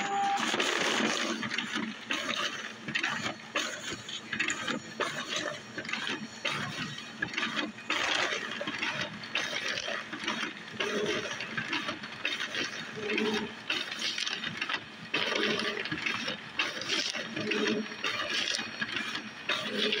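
Paper rustling and crinkling in an uneven, continuous stream, with many short crackles, as sketchbook pages are handled and turned.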